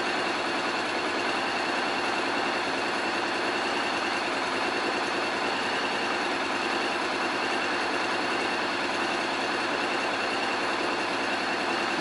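Honda X-ADV motorcycle engine idling, a steady, even running noise that does not change.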